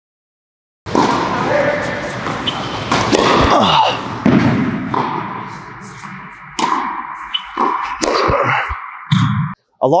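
A series of sharp tennis racket strikes on the ball, echoing in an indoor hall and mixed into a dense layer of other edited-in sound.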